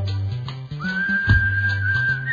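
Instrumental music with a stepping bass line and a regular beat. A high, pure-toned lead comes in just before the middle and holds one long note.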